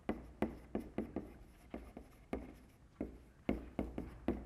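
Chalk writing on a blackboard: an irregular quick run of sharp chalk taps and short scratches, about three a second, as a line of text is written.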